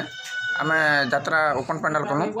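A rooster crows once: a high, slightly falling call, clearest in the first half second and then fading under a man talking.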